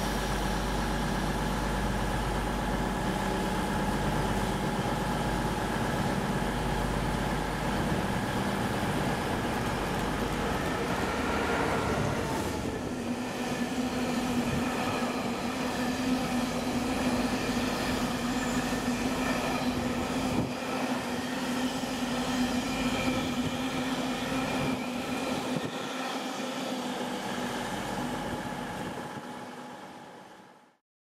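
Freightliner Class 66 diesel locomotive 66605 running through the station with its engine working, followed by a long train of hopper wagons rolling past on the near line, a steady ringing tone from the wheels over the rumble. The sound fades out near the end.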